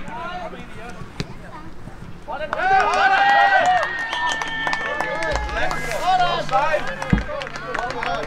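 Several men's voices shouting and calling at once on an outdoor football pitch, growing louder a few seconds in, with one long drawn-out call held over them. Two dull low thumps come near the end.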